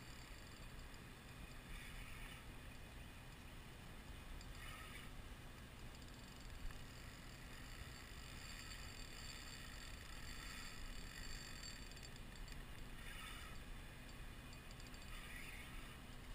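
Quiet ambience on calm water: a steady low hiss with a few soft, brief rustles and faint ticking.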